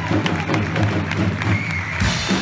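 Audience applauding, with a live band playing steady low sustained notes underneath and a short high whistle near the end.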